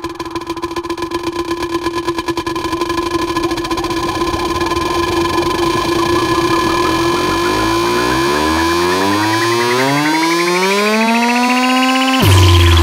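Vinahouse dance-music build-up: a fast drum roll speeding up over held synth tones, then from about seven seconds in a rising pitch sweep that climbs steadily and grows louder.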